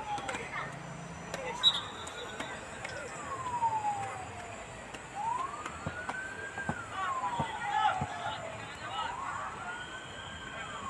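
A siren wailing, its pitch rising and falling slowly about every four seconds. A few sharp thuds and faint voices come from the pitch.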